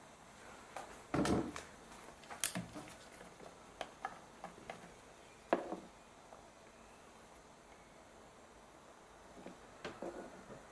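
Plastic screw cap of a car's brake fluid reservoir being unscrewed, lifted off and set down, heard as scattered light clicks and knocks of plastic and gloved fingers. The sharpest knock comes about five and a half seconds in, followed by a quiet stretch and a few small clicks near the end.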